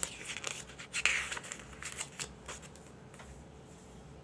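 Paper pages of a CD lyric booklet rustling as they are handled and turned: a run of crisp rustles and ticks over the first two and a half seconds, loudest about a second in.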